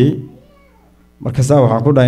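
Speech only: a man speaking into a microphone, pausing briefly before going on.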